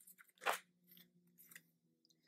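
Oracle card being drawn from the deck by hand: one brief, faint crisp rustle about half a second in, then a few very faint ticks of card handling.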